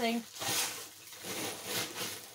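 Paper and packaging rustling as it is handled, in two soft bursts.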